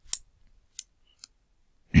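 Three short, sharp clicks, each fainter than the one before, spaced about half a second apart.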